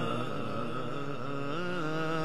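Devotional vocal chanting in naat style: a voice holding long, drawn-out notes that waver up and down, with no instruments or beat.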